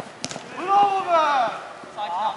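A sharp knock, then a man's loud drawn-out shout of about a second, with no clear words, during a floodlit five-a-side football game.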